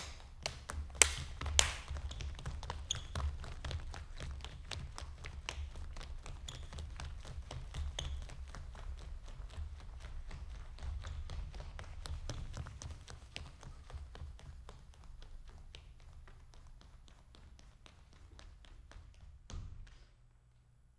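Dancers' sneakers stepping, running and stamping on a stage floor: a dense, uneven run of taps and low thuds, with a few sharp louder hits about a second in. It eases off toward the end and stops suddenly.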